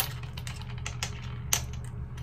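Glass perfume bottles being moved and set down on a countertop: a sharp clink at the start, another about a second and a half in, and light taps between.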